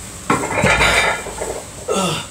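Metal clanking and rattling of barbell weight plates as the barbell is lifted, a jumble of clinks lasting about a second and a half, with a brief voice near the end.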